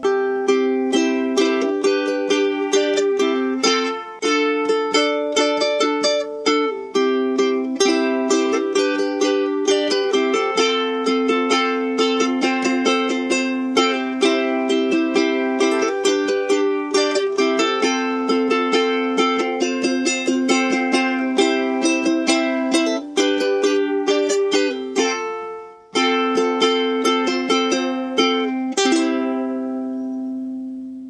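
A ukulele strummed in a steady rhythm through simple major chords (C, G, F), with little added notes on the changes. There is a brief break about three-quarters of the way through, and near the end it finishes on a chord left ringing.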